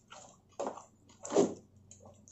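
Close-miked chewing of crunchy food: three separate crunches about half a second apart, the last one the loudest.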